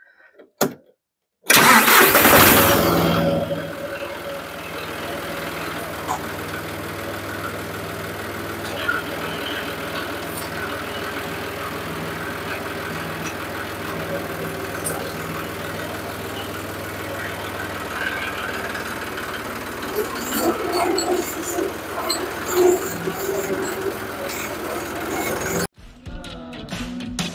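John Deere 5055D tractor's three-cylinder diesel engine starting about a second and a half in, loud for the first couple of seconds, then settling into steady running. This start comes after the coolant temperature sensor fault that kept blowing the fuse at the key has been fixed.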